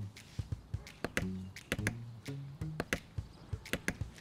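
Hammer taps, about eight sharp knocks at uneven spacing, over a light musical underscore with short low notes.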